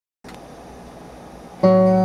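Four-string bass guitar: after a faint hiss, a plucked note starts suddenly about a second and a half in and rings on.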